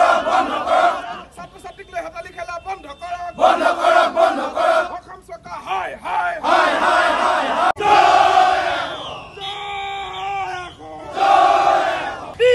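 Crowd of male protesters shouting slogans in unison, in loud bursts every three to four seconds with quieter gaps between.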